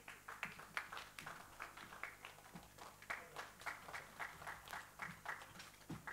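Faint, scattered applause: sparse, irregular hand claps, a few per second, which stop just after the end.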